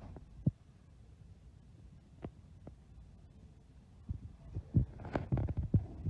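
Handling knocks and low thumps: a few isolated knocks, then a dense run of thumps and clatter over the last two seconds as a hand reaches in and handles the hanging merchandise.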